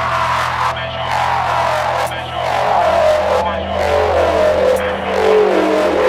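Drum and bass music from a DJ set: repeated falling synth glides over a held bass note that steps up about three seconds in.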